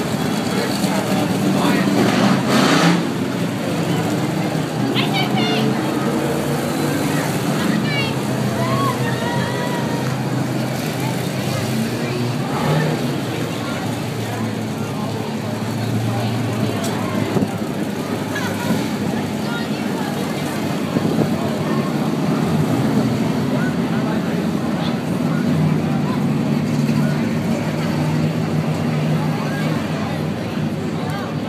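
Race car engines running steadily as the cars circle the track, a continuous low drone throughout.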